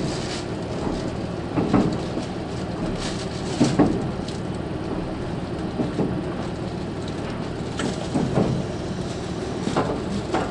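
Running noise heard inside a KiHa 185 series diesel railcar at speed: a steady rumble, with a wheel clack over a rail joint every few seconds.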